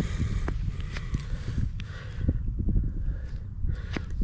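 Gloved hands rubbing and turning a small dug-up metal fixture to clear the soil off it: rustling of gloves and jacket sleeve with a few light clicks, over a steady low rumble.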